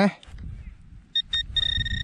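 Handheld metal-detecting pinpointer probed into a dig hole, beeping as it finds a buried metal target: two short high beeps about a second in, then a longer steady beep. Under it, the probe rustles against soil and grass.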